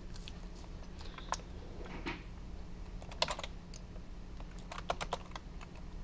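Computer keyboard keys being pressed in short scattered clicks, a few at a time, over a faint low steady hum.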